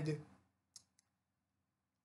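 The tail of a spoken word, then two short, faint clicks close together a little under a second in, followed by near silence.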